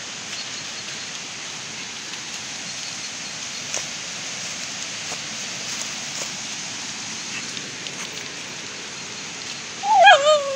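Footsteps of a dog and a person in dry fallen leaves: a steady rustle with faint scattered crackles. A short dog whine begins right at the end.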